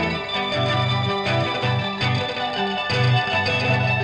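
Music: an electric guitar played through effects, with chorus and some distortion, over low notes that move in short steps.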